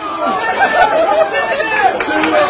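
Several people's voices shouting and calling out over one another, loud and overlapping.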